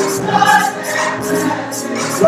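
Church choir singing gospel music over a steady, quick beat.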